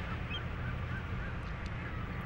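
A steady low background hum with a few faint, short high-pitched calls spaced a fraction of a second apart.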